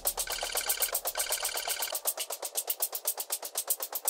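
Quiet stretch of a news-report music bed: a fast, even ticking pulse of about eight ticks a second, with two short runs of high electronic beeps in the first two seconds.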